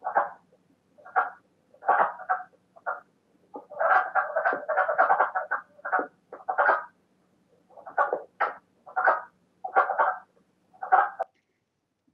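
Male wood frogs giving their breeding call: short, hoarse croaks likened to the quacking of ducks, coming about one a second, with several running together around the middle.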